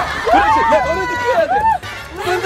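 Several voices shouting and squealing over one another during a scuffle, with no clear words.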